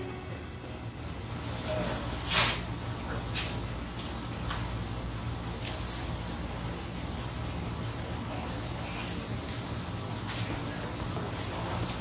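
Close-miked eating sounds: chewing and the soft handling of a large sandwich and its paper liner, with scattered small clicks and rustles, the sharpest about two and a half seconds in, over a steady low room hum.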